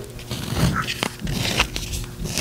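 The digital attachment of a Littmann CORE stethoscope being screwed back onto the tubing by hand: a run of small irregular clicks and scrapes as the threaded parts turn and seat.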